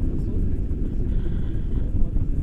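Airflow buffeting the microphone of a camera carried in tandem paraglider flight, heard as a steady low rumble.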